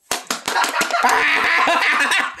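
A person laughing loudly and shrilly: a few short bursts, then one long, unbroken run of laughter.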